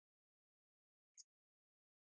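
Near silence, with one faint short click about a second in.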